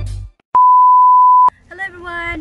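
A loud electronic beep: one pure, steady tone held for about a second and cut off sharply. The tail of music ends just before it, and a voice starts near the end.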